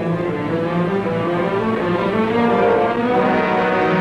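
Orchestral theme music led by low bowed strings, holding long notes at a steady loudness.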